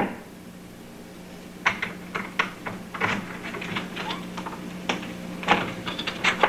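Irregular metallic clicks and rattles of a key and latch being worked in a door lock, as the door is about to be opened, over a steady low hum.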